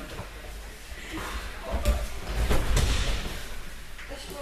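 Bodies hitting a judo mat during a throw: a sharp impact a little under two seconds in, then a heavier, louder thud with scuffling just after.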